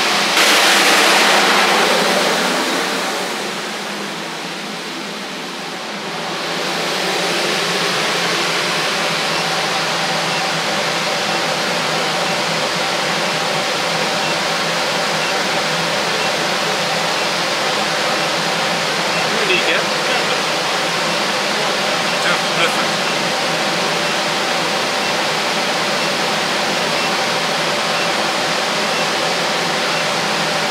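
Air-cleaning unit's fan blowing steadily, an even rush of air with a faint hum under it. It is louder for the first few seconds and dips briefly before settling.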